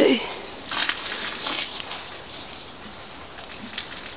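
Horse sniffing close to the microphone: a few short breathy snuffles through the nostrils in the first two seconds, then faint rustles.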